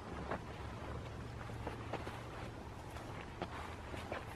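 Faint footsteps on grass, a few soft scattered steps over a low steady rumble.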